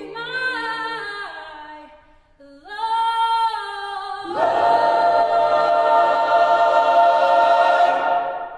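A cappella choir singing a spiritual, a female soloist's voice carrying the melody over low sustained choir notes. About four seconds in, the full choir comes in on a loud closing chord and holds it.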